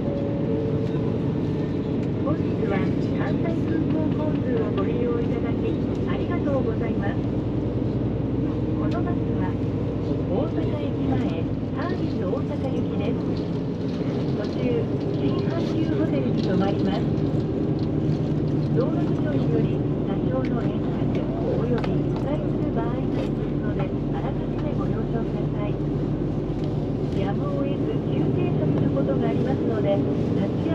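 Coach bus heard from inside the passenger cabin while driving: a steady engine drone mixed with road noise. Faint, indistinct voices sit underneath.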